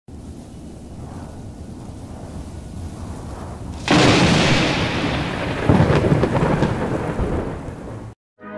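Thunderstorm: steady rain and low rumble, then a sudden loud thunderclap about four seconds in and a second peak of rolling thunder nearly two seconds later, dying away.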